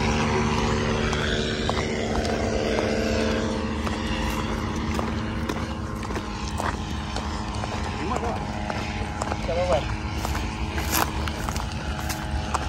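Footsteps crunching on dry, gravelly dirt over a steady low hum, with a few faint voices.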